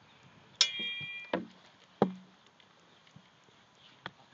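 Sword-and-shield sparring blows: a metal clang about half a second in that rings on for about half a second, then two duller knocks of blows landing on wooden shields, the second about two seconds in.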